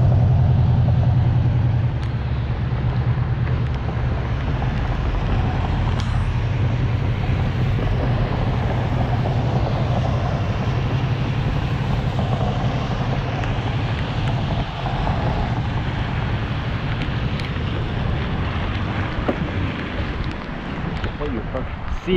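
Traffic on a wet road: the hiss of car tyres on wet pavement and engine noise, under a steady rush of wind and riding noise on a bike-mounted camera's microphone. A low engine hum is loudest in the first two seconds, then settles into the steady hiss.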